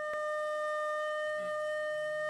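Background music: a single long flute note held steady at one pitch.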